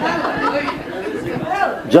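Indistinct chatter of several people talking at once in a large hall.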